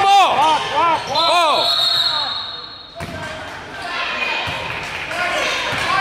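Loud shouting in a gym, followed about a second in by a referee's whistle sounding one long steady blast of under two seconds, stopping play. Afterwards only quieter court noise of sneakers and voices remains.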